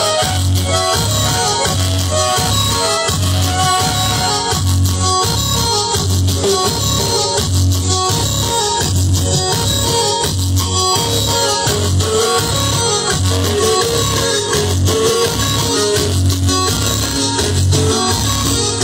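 Music played loud through a large stack of sound-system speaker cabinets, with a strong bass beat pulsing steadily.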